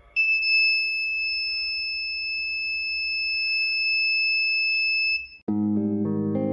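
Small piezo buzzer sounding one continuous high-pitched tone for about five seconds, set off by the flame sensor detecting a lighter flame. It cuts off and guitar music starts just before the end.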